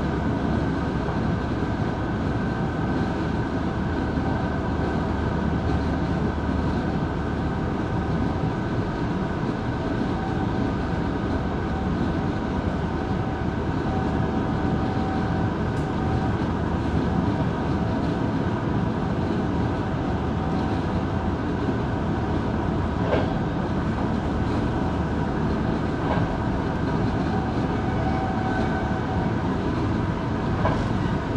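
Electric express train running at about 110 km/h, heard from the driving cab: steady rolling and rail noise with a constant whine. A few sharp clicks from the track come in the second half.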